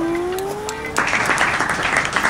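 A smooth tone gliding upward for about a second, then a burst of applause from a crowd clapping.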